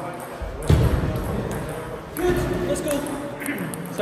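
Voices talking in a large, echoing sports hall, with a heavy low thump under a second in and a few light clicks of a table tennis ball.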